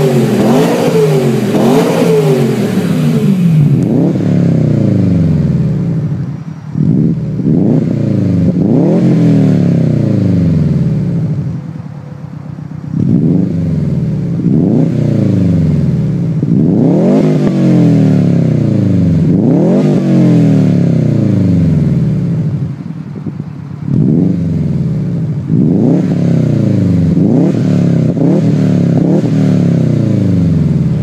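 A BMW M3 E92's V8 is revved through its exhaust for the first few seconds. Then a 2004 Subaru Impreza WRX STi's turbocharged flat-four is revved repeatedly through an Invidia G200 exhaust, its note rising sharply and falling back about ten times.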